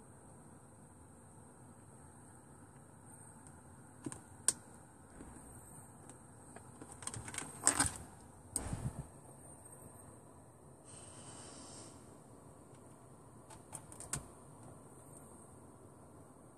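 Scattered clicks and light knocks from handling a phone and a 3.5 mm audio jack plug, with a denser cluster about halfway through, over a faint steady high-pitched hiss.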